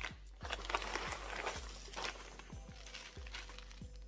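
Clear plastic packaging rustling and crinkling as it is handled, with a few light knocks, over soft background music.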